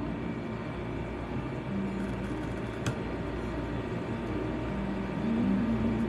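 Small electric motor of a tumbler cup turner running with a steady low whir, with one faint click about three seconds in.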